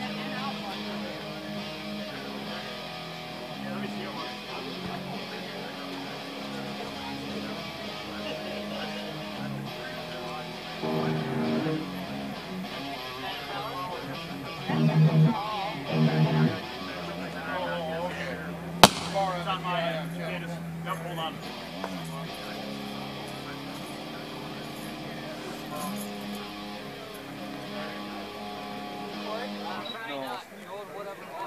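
Electric guitars played through amplifiers in a soundcheck: held notes and loose noodling rather than a song, with louder strummed bursts around a quarter and halfway in. A single sharp click sounds a little past the middle.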